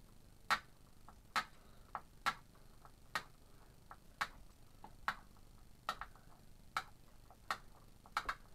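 Sharp ticking clicks at a fairly steady pace of about one a second, with fainter ticks between them.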